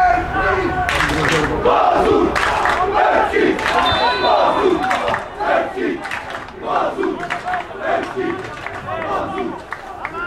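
Football crowd of men shouting and calling over one another, several voices at once, loudest in the first half and dying down towards the end.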